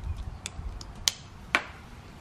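Three sharp clicks, about half a second apart, over a low rumble in the first second.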